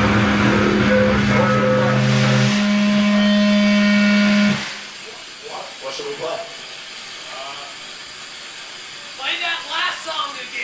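Distorted electric guitar and bass amplifiers ringing out with steady held feedback tones, cut off suddenly about four and a half seconds in. After that, scattered crowd voices in a small room, with louder talk near the end.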